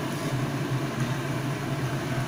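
Soybean kofta balls deep-frying in hot oil in a wok, a steady sizzle, with a steady low hum underneath.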